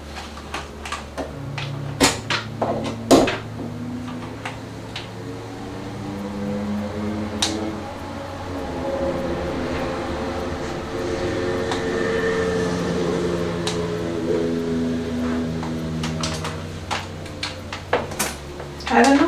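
Sharp clicks and taps in the first few seconds as a hair straightener is handled and its buttons pressed, over a steady low hum. From about five seconds in, a soft melodic sound with held, shifting notes runs for about ten seconds.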